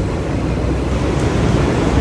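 Steady low rumbling noise of wind buffeting a handheld phone's microphone while walking outdoors, with no distinct event standing out.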